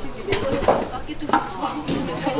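A ladle scraping and stirring in a large metal pot of food in short strokes, with several people talking.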